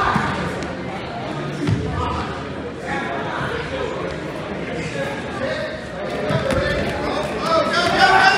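Spectators' voices talking and calling out in an echoing gym, with a few dull thuds. The voices get louder near the end.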